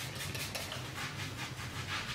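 Self-tanner being put on the skin: a quick, even run of short strokes.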